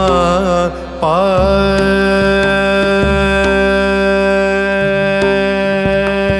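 Odissi classical song: a solo singer's voice turning through quick ornamented notes, then holding one long steady note from about a second and a half in, over instrumental accompaniment.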